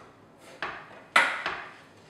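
A serrated kitchen knife knocking against a wooden cutting board while an orange zest is trimmed: a soft scrape, then a sharp knock a little after a second in, with a smaller one just after.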